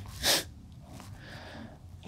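A man's short, sharp breath about a quarter second in, then a softer, quieter breath about a second later, as he chokes up with emotion.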